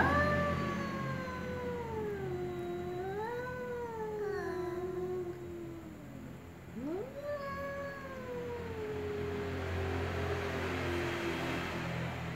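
Domestic cat yowling at another cat in a face-off: two long, drawn-out yowls, each sliding slowly down in pitch, the second starting a moment after the first ends with a quick upward sweep.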